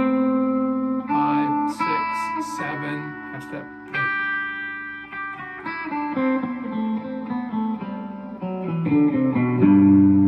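Electric guitar picking the notes of a G major scale one at a time, about one note a second, across the strings. A louder, low, ringing note or chord comes in just before the end.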